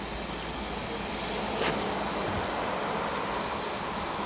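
A steady, even hiss, with a single sharp click about one and a half seconds in.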